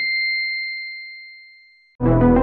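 A single high electronic ding from a logo sound effect: one pure tone that starts at full strength and fades away steadily over about two seconds.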